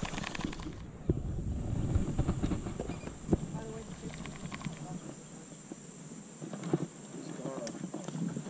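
Baitcasting reel being cranked by hand, with a quick run of fine clicks in the first second, then low wind rumble on the microphone.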